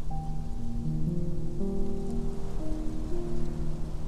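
Solo piano playing a slow, gentle passage of held notes and chords in the middle register, one note entering after another, over a steady noisy hiss underneath.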